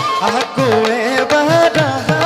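A male voice sings an Assamese dihanam devotional song through a microphone, with a wavering, ornamented melody. Under it, a hand drum plays repeated bass strokes that fall in pitch.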